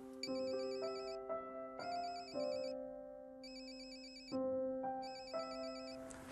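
Mobile phone ringing with a warbling electronic ringtone, four rings of about a second each with short gaps between, over soft sustained background music.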